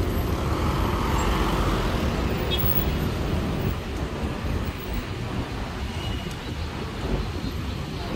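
Road traffic noise: a steady low rumble of vehicle engines and tyres, easing slightly about halfway through.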